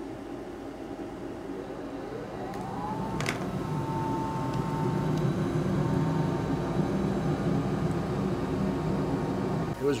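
Liquid-nitrogen cryotherapy chamber running: a steady rush of its blower and nitrogen vapour that swells in from about two seconds in. About three seconds in there is a short rising whine and a click, and then a steady tone holds for a couple of seconds.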